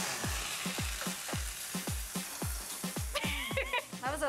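Shrimp, clams and squid sizzling and frying in a hot pan over a flame, a steady hiss throughout. A music track with a quick, steady kick-drum beat plays underneath.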